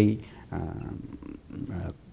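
A man speaking Nepali: a short word at the start, then slow, halting talk with a low, drawn-out vocal sound.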